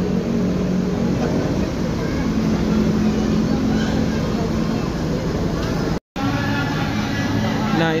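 Bus engines idling with a steady low rumble under the chatter of a waiting crowd. The sound drops out for an instant about six seconds in.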